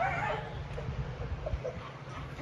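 Elephant seals calling from the colony below: a pitched cry at the start, then a few short faint calls, over a low steady rumble.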